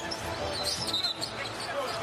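A basketball being dribbled on a hardwood court over steady arena crowd noise, with brief high squeaks about half a second to a second in.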